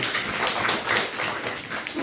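A group of people clapping, dense at first and dying away toward the end.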